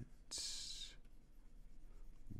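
A single short scratch of a stylus tip dragged across a drawing tablet's surface, about half a second long, a little after the start, then faint room tone.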